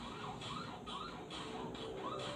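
Audio from the short video being watched: a warbling sound effect of short rising-and-falling tones repeating about three times a second, over a faint musical backing.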